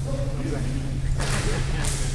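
A short swish and then a sharp crack about half a second later: a karate uniform's cotton sleeves whipping and snapping as the instructor drives a technique against a partner's arm.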